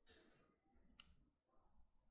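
Near silence with a few faint clicks, one sharper click about halfway through.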